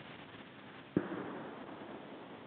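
A single sharp knock about a second in, over faint background hiss.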